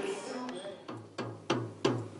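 A musical instrument played: two sharp, low notes struck about a third of a second apart in the second half, each ringing briefly.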